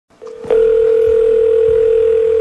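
A telephone dial tone: one steady, unwavering pitch that comes in about half a second in and holds.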